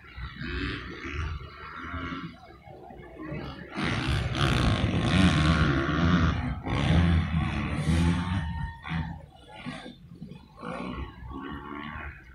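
Several dirt-track motorcycle engines revving up and down as the bikes race around a dirt TT track, loudest for a few seconds in the middle as bikes ride close past.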